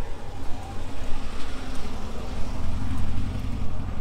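Low engine rumble of a Porsche 356 Speedster-style roadster driving slowly past close by, with a faint steady hum running through it.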